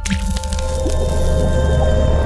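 Short logo music sting: a wet splat hits at the start, followed by held chords over a deep rumble.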